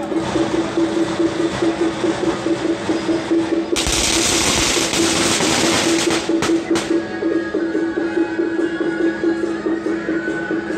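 Festival procession music plays steadily with a pulsing held note. About four seconds in, a string of firecrackers goes off as a dense crackle lasting roughly two seconds, followed by two single bangs.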